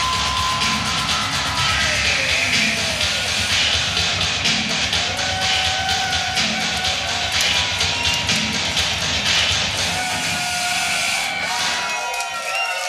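Loud live punk band playing, with driving drums, heavy distorted guitars and bass; the band cuts out near the end.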